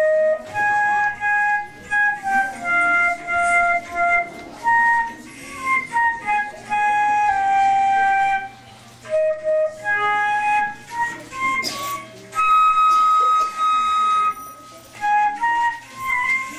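Solo concert flute playing a slow melody: one line of held notes with short breaks between phrases.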